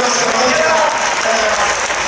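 Crowd applauding in the arena, a steady clapping that goes on throughout.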